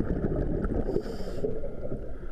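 Muffled underwater noise heard through a submerged camera in a swimming pool: a steady low rumble of moving water, with a brief high-pitched tone about a second in.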